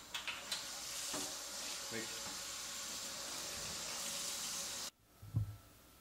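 Kitchen tap running hot water into a stainless-steel sink, a steady hiss that cuts off abruptly about five seconds in as the tap is shut. A soft knock follows.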